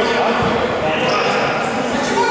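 Voices chattering in a large echoing sports hall, with a single low thud of a basketball bouncing on the wooden floor about half a second in.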